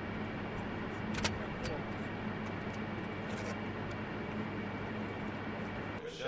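Ambience of an open football stadium during a training session: a steady wash of background noise with a low hum, and a couple of faint knocks and a distant call just over a second in.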